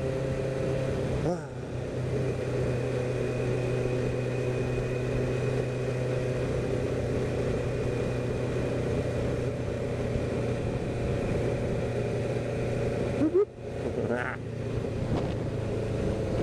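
Honda CBR600F1's inline-four engine running steadily at road speed under a haze of wind and road noise, heard from the rider's helmet. The engine note dips briefly about a second in, and again sharply near the end, then climbs back.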